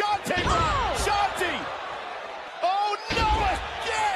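A wrestler's body slammed onto the canvas of a wrestling ring: heavy thuds on the mat near the start and again about three seconds in, with voices shouting in between.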